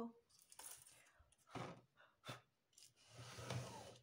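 Faint rustling of satin ribbon and wire being handled, with a brief vocal sound at the very start and a long breathy exhale about three seconds in.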